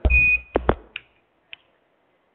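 A short electronic beep, a single steady high tone, sounds over a low thump at the start. A few sharp clicks follow over the next second and a half. It all comes through the narrow sound of a phone line.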